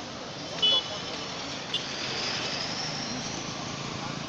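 Busy street ambience: a crowd of voices talking over passing cars and motorcycles, with a brief shrill beep about two-thirds of a second in.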